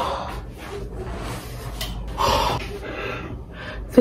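A woman breathing hard and out of breath from exercise, with two heavy breaths about two seconds apart.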